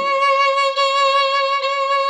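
Violin holding one long, steady note, a C-sharp played with the second finger on the A string, sustained on a single bow stroke.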